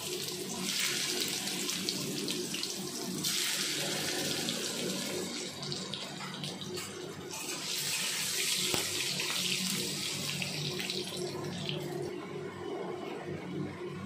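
Boiled elephant foot yam (ool) pieces sizzling as they shallow-fry in hot mustard oil in a kadhai. The sizzle swells and eases in stretches, with a few light scrapes of a metal spatula turning the pieces.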